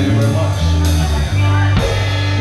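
Live band closing out a song: a drum kit with repeated cymbal crashes over loud, held bass and keyboard notes.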